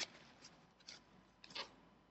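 Near silence broken by three faint, brief handling rustles and clicks as the small metal vape tank is wiped and handled.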